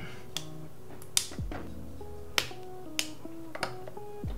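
Background instrumental music: a plucked guitar line over sliding bass notes, with a sharp snap recurring about every second and a bit.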